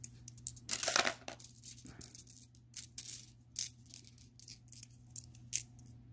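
Polished tumbled rocks clicking and clacking against one another as they are shuffled in a hand: a run of irregular sharp clicks, with a louder rubbing clatter about a second in.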